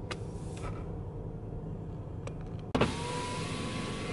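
Car cabin noise: a steady low engine and road rumble from the car creeping along in a queue. About three-quarters of the way in the sound jumps to a louder hiss with a steady whine.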